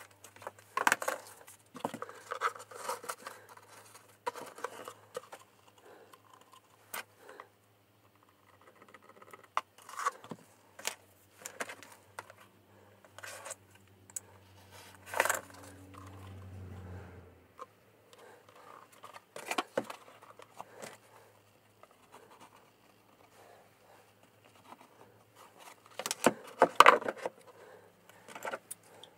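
Scattered small workbench sounds: a craft knife cutting book cloth against a steel ruler, with light clicks and scrapes as the ruler and board are moved and the cloth rustles. A faint low hum stops about two-thirds of the way through.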